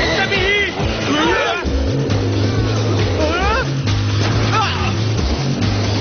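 Cartoon action soundtrack: music with a pulsing bass line under short voiced exclamations that swoop up and down in pitch.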